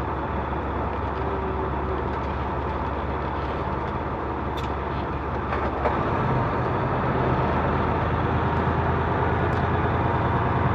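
Semi truck's diesel engine and road noise heard from inside the cab while driving slowly. About six seconds in, the engine note changes and grows a little louder, with a sharp click just before.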